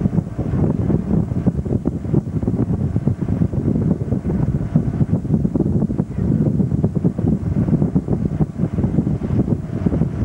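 Wind buffeting the microphone aboard a motorboat under way, a fluctuating rumble with the boat's engine and churning wake beneath it.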